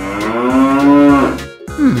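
One long, drawn-out pitched call lasting about a second and a half, rising slightly then falling in pitch, over background music; a short falling 'hmm' follows near the end.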